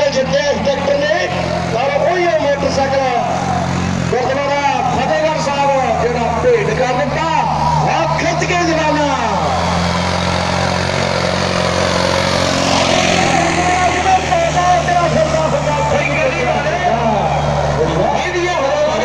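Preet 6049 tractor's diesel engine running hard and steadily under heavy load as it drags a disc harrow through soil. A loud wavering voice, like an announcer calling, sits over the engine for the first half and again near the end. A louder rushing swell comes in the middle.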